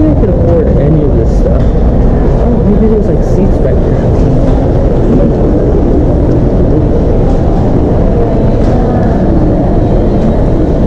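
Indistinct voices over a loud, steady low rumble.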